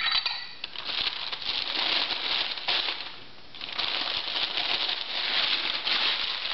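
Sheets of newsprint rustling and crinkling as they are handled and wrapped around small plates by hand, with a brief lull about three seconds in.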